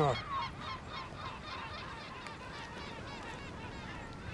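A colony of gulls calling: many short, overlapping cries in a continuous chatter.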